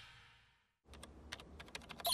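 Typing on a computer keyboard: a quick, uneven run of key clicks over a faint low hum, starting about a second in, just after the last of a music sting fades away.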